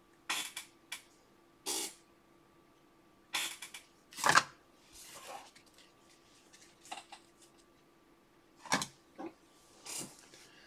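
Short, separate rustles and clicks of a trading-card pack being opened and the cards handled, the loudest about four seconds in, over a faint steady hum.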